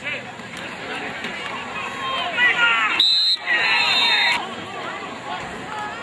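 Football crowd and sideline voices yelling and cheering during a play, with one short, shrill blast of a referee's whistle about three seconds in, blowing the play dead after the tackle.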